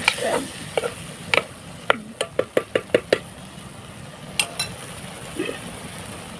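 Ladle stirring tomato curry in a clay kadai: scraping and sharp knocks against the pan, with a quick run of about eight knocks a little past two seconds in. Under it there is a faint steady sizzle from the simmering curry.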